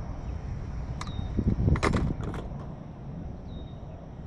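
Steady low wind rumble on the microphone, with a cluster of knocks and thumps about halfway through, the loudest moment, as gear is handled on the skiff. A click about a second in and a short high tone near the end also sound.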